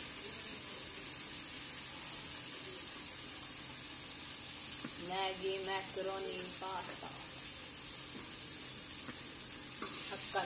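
Chopped vegetables frying in hot oil in a steel kadai on a gas stove, giving a steady sizzle.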